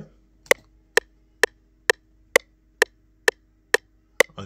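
FL Studio 20's built-in metronome clicking on every beat at 130 BPM: eight even clicks about half a second apart.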